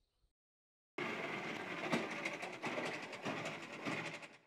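Vintage scooter's engine running, a steady rough rumble that starts suddenly about a second in.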